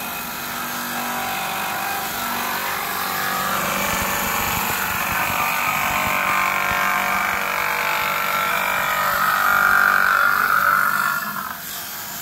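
An electric gem-cutting machine running as it cuts gemstone stock into small pieces: a steady whining grind that grows louder toward the end and eases off about a second before it ends.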